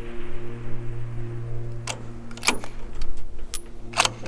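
The rolling echo of a rifle shot fades out at the start, over a steady low hum. From about halfway there are several sharp metallic clicks, typical of a bolt-action rifle's bolt being worked after the shot.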